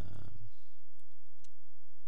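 Two computer keyboard key clicks about half a second apart, coming about a second in, after a brief murmur of voice at the start.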